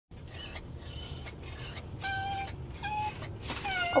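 A small dog whining in a string of short, high whimpers of about half a second each, the last one falling in pitch near the end, over a low steady rumble.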